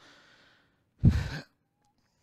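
A man sighs heavily close to a clip-on lapel microphone about a second in, after a faint in-breath; the breath hitting the mic adds a low rumble.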